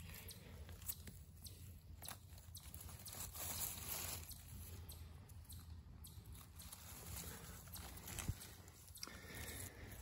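Faint crunching and tearing as a clump of hen-of-the-woods (maitake) mushroom is broken apart and pulled up by hand, with scattered small crackles of dry leaf litter.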